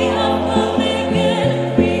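A choir singing a gospel praise chorus over instrumental accompaniment with a steady beat and a moving bass line.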